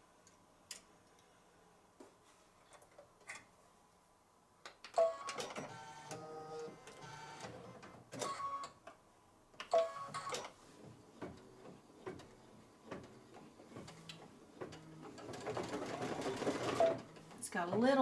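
Computerized Brother embroidery machine after a thread change: a few faint clicks at first, then about five seconds in the mechanism starts running, with a busier stretch of stitching near the end.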